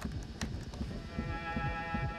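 A held cello note starts about a second in, played through the small speaker of a toy cassette player.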